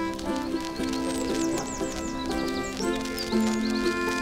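Concertina playing a blues tune in held chords, the reed notes changing every half second or so. From about a second in, a run of quick, high, falling chirps sounds over the music for about two seconds.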